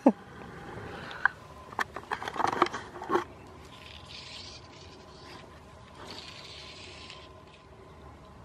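Fly line being stripped in by hand: a few light clicks and handling knocks in the first three seconds, then two soft hissing pulls of line, each about a second long.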